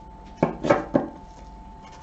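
Tarot cards tapped against a cloth-covered tabletop: three quick taps close together about half a second in, as a card is laid down. A faint steady hum runs underneath.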